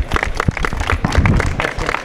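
Applause from a small group of people close by: many separate, irregular hand claps.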